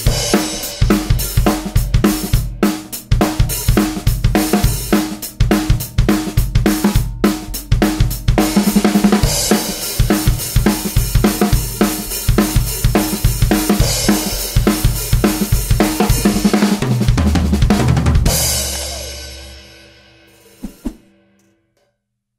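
Acoustic Pearl drum kit with Paiste Color Sound 900 hi-hat and cymbals playing a steady rock groove of snare, bass drum and cymbals. Near the end the groove stops on a low drum hit that rings on and dies away, followed by one light tap.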